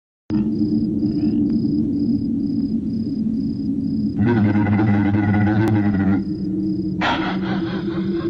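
Background music with a steady drone and a light ticking beat about twice a second. About four seconds in, an animated camel gives a loud bellowing cry that lasts about two seconds, and a second cry starts near the end.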